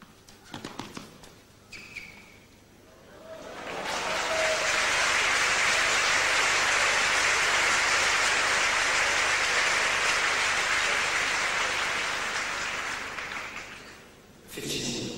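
A few tennis ball strikes from the end of a rally, then an indoor arena crowd applauding the finished point, rising about three seconds in, holding loud and steady, and fading away near the end.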